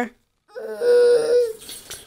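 A young child's wordless vocal sound, held for about a second at a nearly steady pitch, starting about half a second in.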